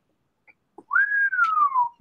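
A person whistles one note that rises briefly, then glides slowly downward for about a second, starting just under halfway through.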